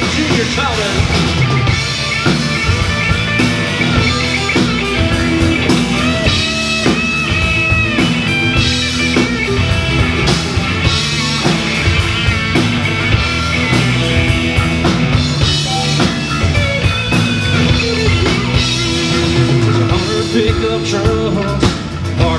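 Live country-rock band playing, with drum kit, electric guitar, bass guitar and acoustic guitar.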